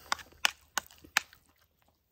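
Eating chili mac with a spoon from a metal skillet, heard close up: four sharp clicks about a third of a second apart, then they stop.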